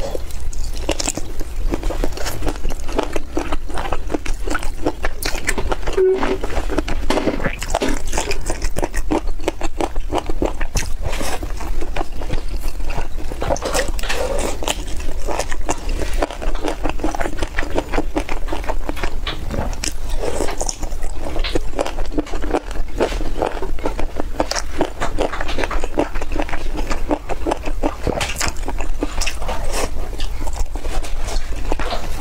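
Close-up wet chewing, smacking and biting of braised bone-in meat, a dense run of irregular moist clicks and crackles, over a steady low hum.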